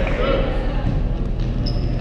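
Indistinct chatter of volleyball players echoing in a large gymnasium, strongest in the first half-second, over a steady low hum.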